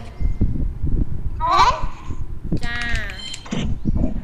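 A child's high voice coming through a video call: a short call about a second and a half in, then a longer drawn-out call, over low rumbling microphone noise.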